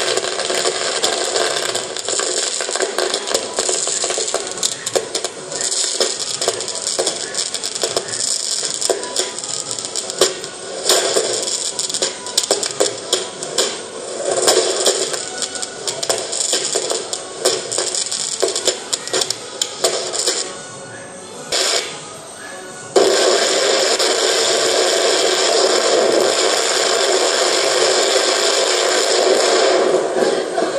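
Fireworks going off: a dense run of sharp cracks and crackling pops, easing briefly about two-thirds of the way through, then giving way abruptly to a steady loud hiss.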